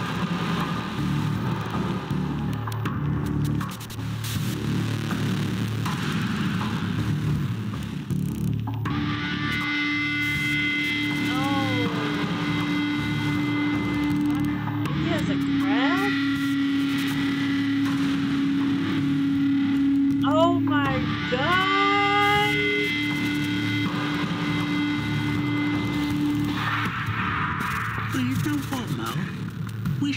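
Eerie horror-film score: a low rumbling bed, then from about nine seconds a long held drone with thin high tones above it. A few sliding, wavering pitches come in near the middle and again about two-thirds through.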